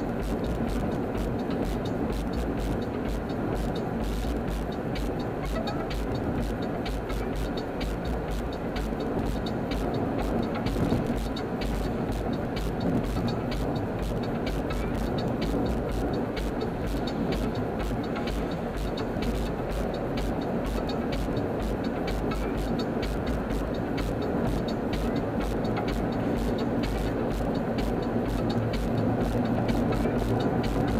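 Steady road and engine noise heard from inside a car's cabin while cruising at freeway speed.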